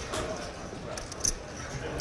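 Quiet room noise with a faint background murmur and a single soft click a little past a second in.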